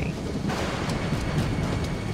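Steady rush of air past a light plane gliding down with its engine dead, with a low rumble beneath and a faint high tone held over it; the rush swells in about half a second in.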